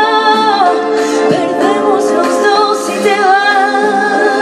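A woman singing live into a microphone, long held notes that bend and waver in pitch, with music behind her.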